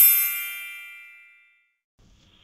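A single bright, bell-like chime, the transition sound effect between slides: struck once, ringing with several high tones at once, and fading away over about a second and a half.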